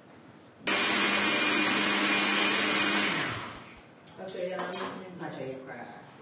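Countertop electric blender switched on suddenly and running steadily at full speed for about two and a half seconds, then switched off and spinning down.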